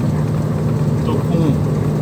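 Diesel engine of a loaded Iveco truck droning steadily, heard from inside the cab, as it holds the truck back on a long downhill grade with the engine brake.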